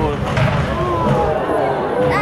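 A bang from a display cannon firing near the start, over the voices of a crowd of spectators.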